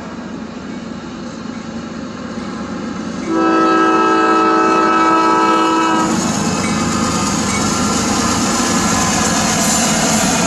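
CSX freight train's diesel locomotive approaching a grade crossing, its air horn sounding one long blast from about three seconds in until the locomotive reaches the crossing. After that comes the steady noise of the locomotive and freight cars passing close by.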